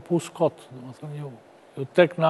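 A man speaking in short phrases with brief pauses between them.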